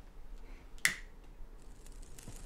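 A single sharp snap-like click a little under a second in, over faint room tone.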